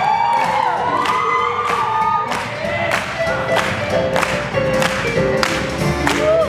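Live swing band playing an upbeat tune, a steady beat of about two strokes a second under sliding melody lines.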